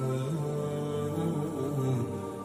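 Background vocal music: a low voice chanting in long held notes that step up and down in pitch.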